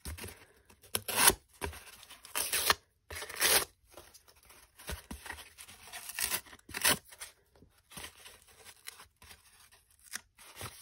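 Paper facing being peeled and torn by hand off a piece of corrugated cardboard, in a series of short, irregular rips with quieter scraping between them.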